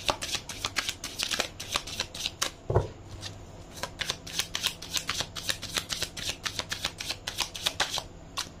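A tarot deck being shuffled by hand, with a quick, uneven run of crisp card clicks as the cards pass between the hands. A single low thump comes a little under three seconds in.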